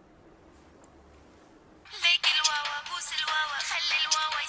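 A mobile phone starts ringing about two seconds in with a loud musical ringtone, a busy high melody; before it, near quiet.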